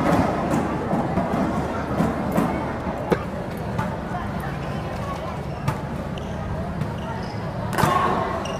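Badminton rackets striking the shuttlecock in a rally: about half a dozen sharp hits at uneven spacing, over steady hall background noise.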